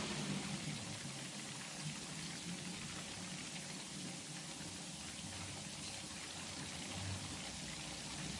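Faint steady hiss of the recording's background noise, with no distinct events in it.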